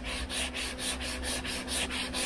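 Long hand sanding block with 120-grit sandpaper rubbed back and forth over Bondo body filler and primer on a car body panel, in quick, even strokes several times a second.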